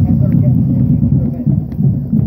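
A marching band drumline playing a parade cadence. It is loud, with the drums heard mostly as a dense low rumble under faint quicker strikes.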